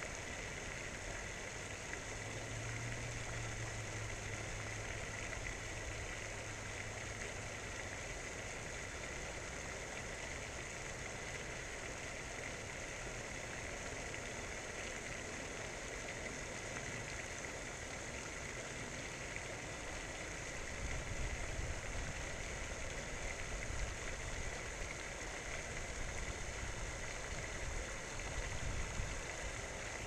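Faint, steady outdoor background noise. A low hum comes in for a few seconds near the start, and low, uneven rumbling comes in during the last third.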